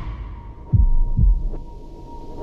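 Heartbeat-like double thud: two deep booms, each falling in pitch, about half a second apart, over a thin steady high tone.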